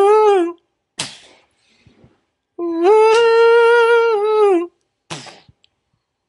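A man humming a slow, wordless melody in long held notes, demonstrating the vocal line of a song. One note trails off early on, then after a breath comes a longer, slightly higher note of about two seconds, followed by a short breath.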